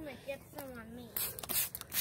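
A woman's voice in short unworded vocal sounds, followed from just past a second in by crackly rustling and scraping noise with many small clicks.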